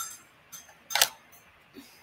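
Plastic clicks from a LEGO Polaroid camera model as its red shutter button is pressed to push the brick-built film print out: a handful of short sharp clicks, the loudest about a second in.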